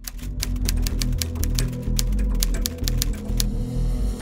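A quick, uneven run of sharp typewriter-style key clicks, about six a second, stopping about three and a half seconds in, over background music with a deep bass.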